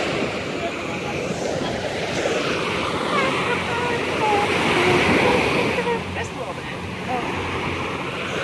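Small waves breaking and washing up onto a sandy beach: a continuous rush of surf that swells and eases as the waves come in.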